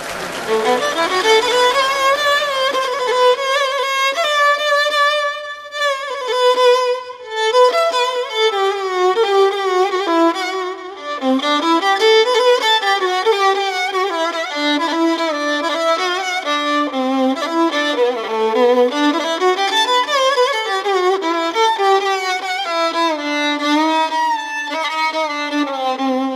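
Violin playing a winding, ornamented melody with frequent slides, the instrumental opening of a Greek song.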